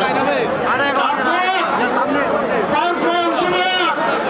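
Dense crowd of men talking and calling out over one another close around, a steady hubbub of overlapping voices.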